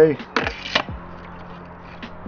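Plastic pump assembly of a hand pump-up garden pressure sprayer being lowered into the tank's neck: a brief plastic scrape and a few light clicks, then quiet.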